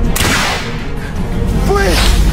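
An arrow whooshing through the air in a sudden sharp hiss just after the start, over dramatic film-score music. A short falling pitched sound comes near the end.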